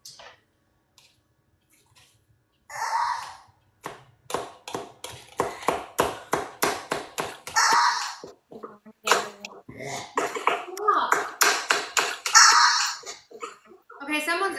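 Knife chopping fresh mint on a plastic cutting board: quick, even chops at about three a second, starting a few seconds in, with voices talking over the later chops.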